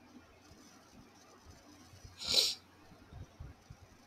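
A single short, hissy, breath-like burst of air noise about two seconds in, from the person at the microphone, followed by a few soft low thumps over faint room tone.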